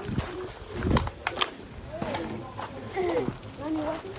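Faint voices of other people talking, with low knocks and rubbing from a handheld camera being carried along.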